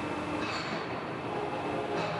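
H-beam CNC plasma cutting machine running, a steady mechanical noise as its torch head moves and swings into position on the beam.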